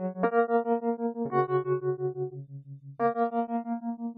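MrTramp2 software Wurlitzer electric piano playing held chords with tremolo on, the volume pulsing quickly and evenly. New chords are struck about a quarter second in, just over a second in, and at three seconds.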